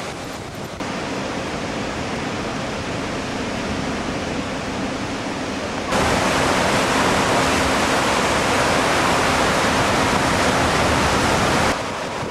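Water rushing and churning through the gates of a river dam, a steady noise. About six seconds in it turns suddenly louder and fuller, then drops back just before the end.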